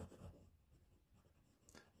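Very faint rubbing of an oil pastel on paper while colouring in, dying away to near silence after the first half second.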